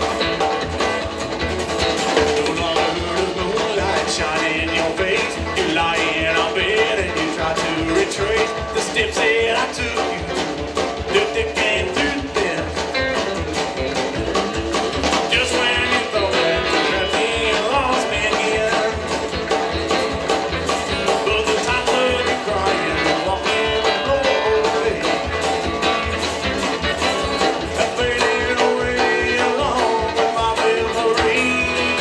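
A live band playing a country song with a bluegrass feel: strummed acoustic guitar, plucked upright bass and drums, with a man singing.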